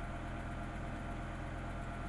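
BMW S85 V10 engine of a 2006 E60 M5 idling, a low, steady sound heard inside the cabin. The car is in reduced-power mode from a failed throttle actuator.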